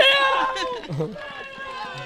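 A young man's long, high cheering yell, held for nearly a second and trailing off, followed by quieter voices.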